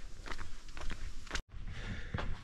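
Faint footsteps on a dirt bush track, a few irregular steps. About a second and a half in, the sound cuts out abruptly for a moment, then faint background noise follows.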